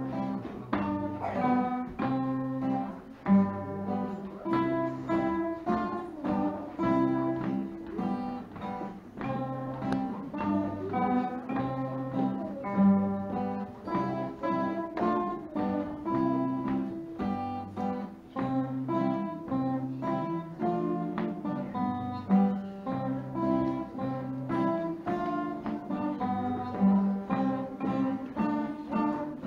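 A small ensemble of acoustic guitars playing an instrumental piece: a plucked melody of short, evenly spaced notes over a repeating bass line.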